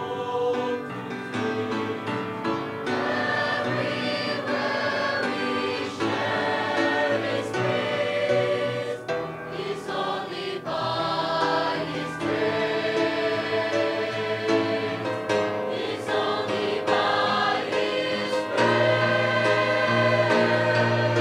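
Mixed choir of men's and women's voices singing a hymn in harmony, swelling louder near the end.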